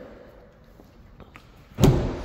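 Faint background, then one sudden loud clunk near the end as the pickup's tailgate handle is worked and the latch lets go.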